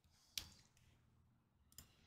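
Near silence broken by two computer mouse clicks: a sharper one about a third of a second in and a fainter one near the end.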